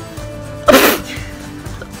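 A person's short, sharp burst of breath, a little under a second in, over quiet background music.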